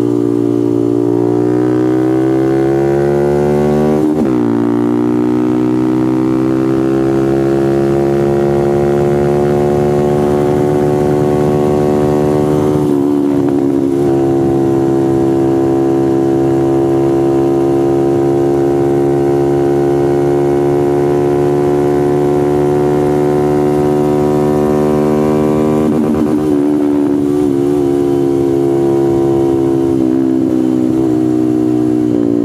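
Honda Grom's 125 cc single-cylinder four-stroke engine at full throttle on track, its pitch climbing through the gears with two upshifts, about four seconds in and about thirteen seconds in, each dropping the revs before it climbs again. It then holds high, nearly steady revs, with a brief break in the note near the end.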